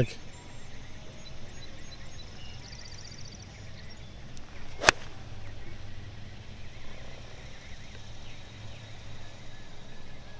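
A golf club swung through a full shot and striking the ball off the fairway: a short swish that rises into one sharp crack of impact about five seconds in.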